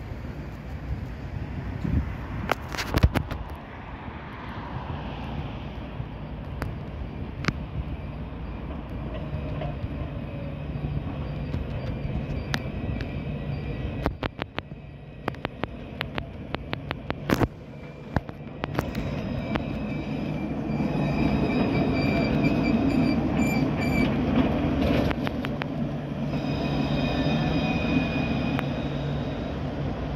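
Lyon Alstom Citadis tram approaching and passing at close range, its rolling rumble growing louder in the second half. High steady whining tones join from about twelve seconds in and are strongest as it passes. Sharp clicks come and go throughout, with a dense run of them in the middle.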